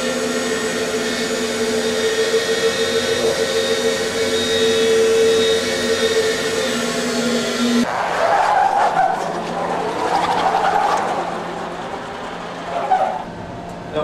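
Van de Graaff generator running with its drive motor and belt, a steady electrical hum with a faint hiss, while it lights a fluorescent tube held near its sphere. About eight seconds in, the hum cuts off abruptly and an uneven rushing sound takes over.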